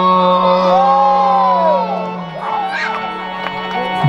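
Devotional bhajan to Shiva: a singer holds a long note over a steady electronic keyboard chord, and the note bends down and ends about halfway through. The music then drops quieter, with voices over it.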